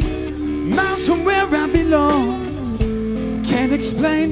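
Live rock power trio playing: electric guitar, bass guitar and drum kit, with a bending melody line over the bass and regular drum hits.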